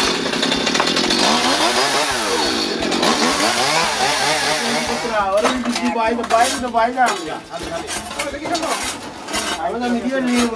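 Gasoline chainsaw running and revving, its pitch rising and falling, for about the first five seconds.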